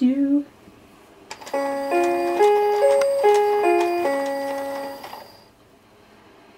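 Electronic baby toy playing a short beeping tune of about eight plain, steady notes. It starts just after a click and stops about five seconds in.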